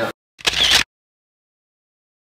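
Camera-shutter sound effect at an edit transition: a single short snap lasting about half a second, with dead digital silence before and after it.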